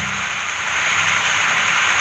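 Steady hiss with a faint low hum beneath it, unchanging throughout: the background noise of the voice recording, heard in a gap between sentences.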